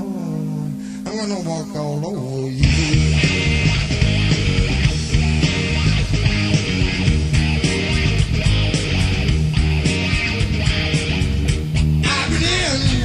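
Rock song: a sung line over held guitar and bass notes, then the full band with drums comes in about two and a half seconds in and plays on with guitar.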